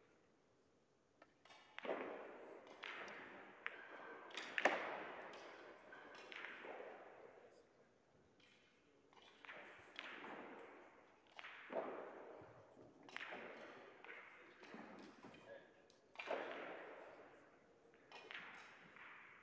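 Billiard balls clacking on nearby tables in a large hall: about a dozen sharp knocks at irregular intervals, each with a short echo. Faint voices underneath.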